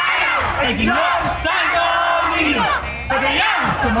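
A large group of voices chanting and yelling together, many pitches rising and falling at once, with a brief lull near three seconds before the shouting picks up again.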